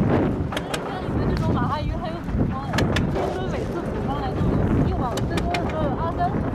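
Gill net being hauled into a small boat with chum salmon thrashing in it: irregular sharp wet slaps and knocks, several in quick succession, over a steady low wind rumble on the microphone.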